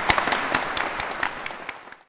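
Audience clapping and applauding, a dense patter of many hands with some louder individual claps, slowly dying down and then cut off abruptly at the end.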